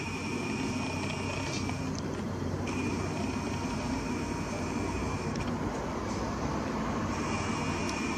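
Camera lens zoom motor whining in spells of a couple of seconds, stopping and starting twice, over a steady low background rumble.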